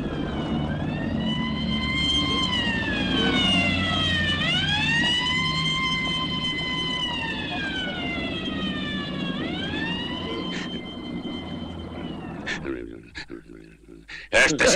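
Wailing siren, slowly rising and falling in about three long wails over a low rumble, cutting off shortly before the end, with a few short clicks after it.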